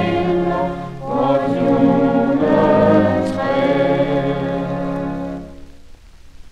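Choir singing a Christmas song on a 1954 78 rpm record, with one phrase ending about a second in and a long held final chord that fades out near the end.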